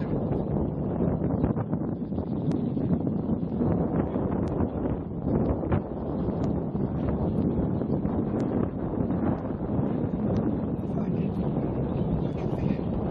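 Wind buffeting the microphone: a steady low rumbling noise, with a few faint clicks scattered through it.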